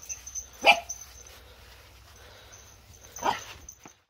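Staffordshire bull terrier puppy barking twice, short barks about two and a half seconds apart, the first louder.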